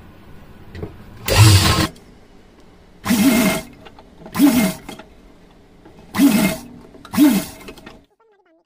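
A sewing machine stitching cotton fabric in five short runs of about half a second each. The whine rises and falls within each run, with pauses between the runs.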